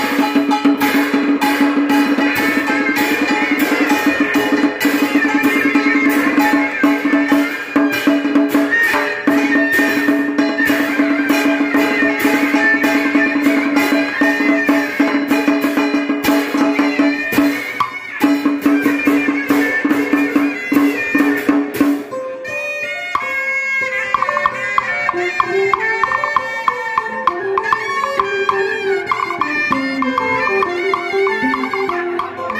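Vietnamese traditional ceremonial ensemble playing: fast drumming on barrel drums with cymbal over a held melodic note. About twenty-two seconds in, the drumming drops away and a wandering melody on two-string fiddle and electric guitar carries on.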